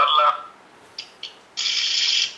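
A short burst of rapid ratchet-like mechanical clicking, starting about one and a half seconds in and lasting well under a second, after two faint clicks.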